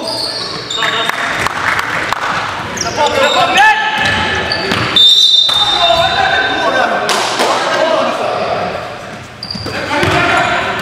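Indoor basketball game on a hardwood gym court: the ball bouncing, sneakers squeaking and players calling out, echoing in the hall. A short, sharp high squeal stands out about halfway through.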